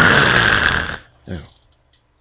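A man's loud, breathy exhale close to a headset microphone, lasting about a second, followed by a brief low grunt.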